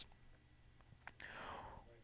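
Near silence: room tone, with a couple of faint clicks about a second in, then a soft breath drawn in just before speech resumes.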